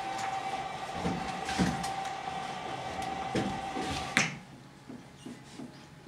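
Steady room hum broken by a few knocks and thumps, the loudest about four seconds in, after which the hum stops. Then a faint quick series of short strokes: a marker writing on a whiteboard.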